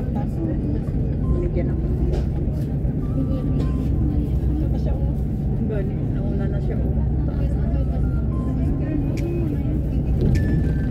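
Steady low rumble of a moving road vehicle cruising at highway speed, with indistinct voices talking in the background.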